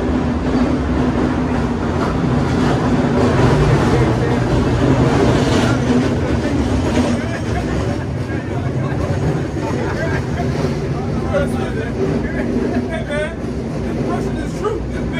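Street traffic: a large vehicle's engine running with a steady low drone, loudest in the first half and fading after, with voices talking over it.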